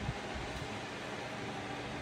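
Steady, even hiss of background noise, like a fan or air conditioning, with one soft low bump just after the start.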